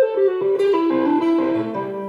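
Clean-toned electric guitar playing a quick descending single-note legato run. The notes step down in pitch and end on a lower note that is held and fades away.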